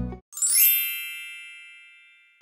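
Background guitar music cuts off, then a rising shimmering chime sound effect rings out with many high tones and slowly fades.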